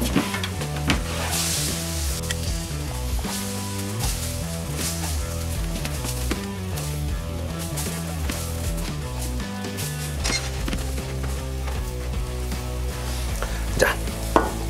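Background music with a bass line that moves in steady steps from note to note.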